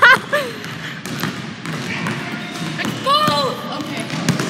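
Basketballs bouncing on a hardwood gym floor, a scatter of single thuds from several balls, with children's voices in the hall and a short shout about three seconds in.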